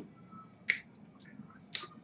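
Two short, sharp clicks about a second apart, with a faint thin tone just before the first.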